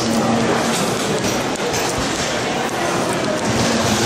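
Busy indoor railway-station concourse: a steady hubbub of background voices filling a large hall, with one short low thump about halfway through.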